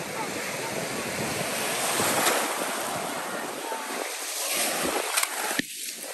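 Small waves washing and breaking around the legs in shallow surf, a steady rush of foamy water that swells about two seconds in, with a couple of short knocks near the end.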